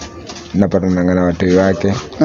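A man's voice making two drawn-out, low hummed sounds, starting about half a second in.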